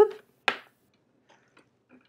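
A single short click about half a second in, as a power cable is pulled out of the Raspberry Pi assembly.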